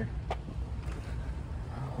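Wheelchair wheels rolling over parking-lot pavement: a steady low rumble, with one light click about a third of a second in.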